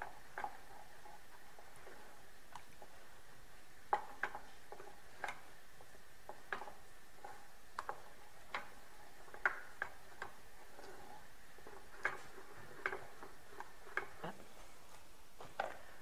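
Wooden spoon stirring melting chocolate and butter in a small saucepan, knocking against the pan's sides and bottom in scattered, irregular light clicks.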